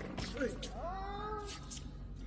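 A single drawn-out vocal cry, about a second long, its pitch rising and then falling.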